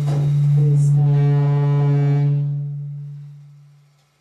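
A loud, steady low drone note with a rich stack of overtones from amplified experimental performance gear, holding for about two seconds and then fading away to near silence by the end.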